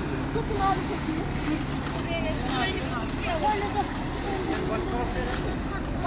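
Several people's voices talking at once, short overlapping snatches of speech, over a steady low rumble.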